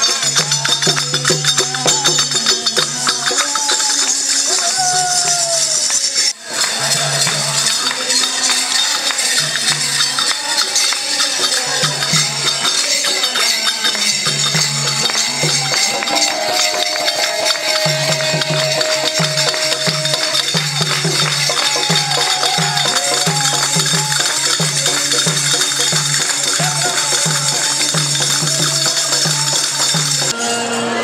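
Devotional group singing of a bhajan to a hand-played barrel drum (dhol) beating a steady rhythm, with hand clapping and high jingling percussion. The sound drops out for a moment about six seconds in.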